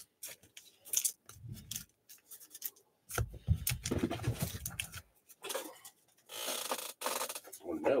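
Trading cards and clear plastic card holders being handled on a tabletop: scattered clicks, rubbing and scraping, with a short rasping swish near the end.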